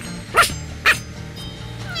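Two short barks about half a second apart, each a sharp call that drops in pitch, over background music.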